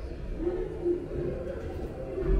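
Soundtrack of an animated ghost video display, a low voice-like sound that wavers in pitch.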